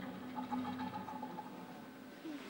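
Nylon-string classical guitar played softly, notes ringing and held, with a fresh note plucked about half a second in.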